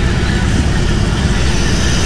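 BMW R18 Bagger's 1,802 cc boxer-twin engine idling steadily at low revs.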